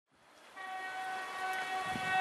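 Horn of a TEP70 diesel passenger locomotive, sounding as one steady chord of several tones that starts about half a second in and is held.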